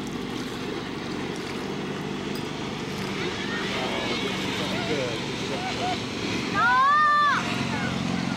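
Tow boat's motor running steadily under a rush of wind and water, with distant calls from the tube riders, then a loud drawn-out yell lasting under a second near the end.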